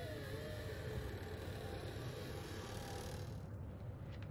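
Low steady rumble with a faint wavering tone in its first second; the high hiss above it drops away near the end.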